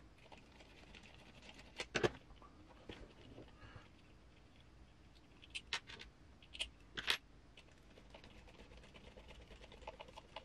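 Small sharp clicks and taps of a hand hex driver and tiny metal screws being handled and driven into an RC crawler wheel, scattered, with a pair of louder clicks about 2 seconds in and a cluster of them past the middle.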